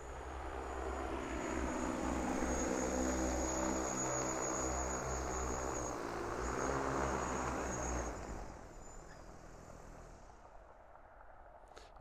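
Six-rotor DJI Agras T20 spray drone's rotors humming as it flies in and lands, growing louder over the first few seconds, then dying away after about eight seconds as the motors stop.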